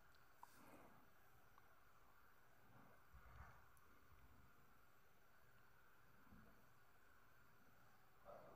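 Near silence: faint room tone with a few soft, brief noises.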